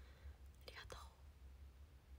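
Near silence: a low steady hum, with a brief faint whisper about halfway through.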